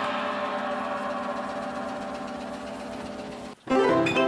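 An American Photoplayer holds a chord that fades slowly. It breaks off abruptly, and a new, brisker tune on the same instrument starts just before the end.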